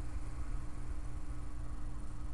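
A steady low hum with a faint, steady higher tone over light hiss, unchanging throughout.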